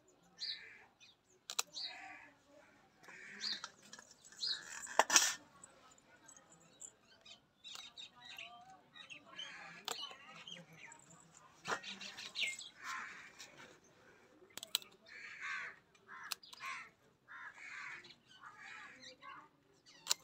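Birds calling over and over in short calls, together with sharp snips of scissors cutting okra stalks; the loudest snip comes about five seconds in.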